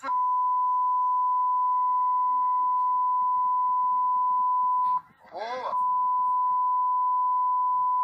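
A steady, single-pitched censor bleep tone laid over speech, running for about five seconds. It breaks for a brief spoken word, then resumes.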